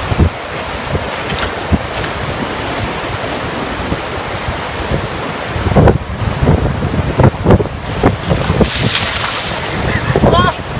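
Steady roar of river rapids with wind buffeting the microphone. From about six seconds in come irregular low bumps and rumbles, and near the end a short rush of water as a cooler of ice water is poured over a man's head.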